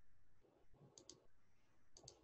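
Faint computer mouse clicks over near-silent room tone: a quick pair about halfway through and another near the end.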